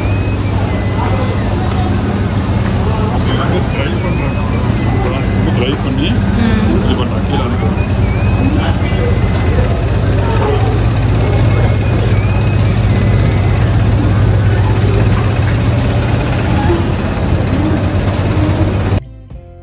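Tea-processing machinery running: electric motors driving conveyor belts and rollers, giving a loud, steady hum with continuous clatter and scattered short, high squeaks.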